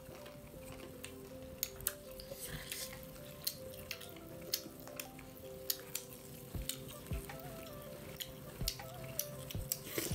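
Close-miked eating sounds: irregular wet clicks of chewing and lip-smacking on soft dhido and pork gravy, several a second, with fingers working the food on steel plates. Faint steady tones hum underneath.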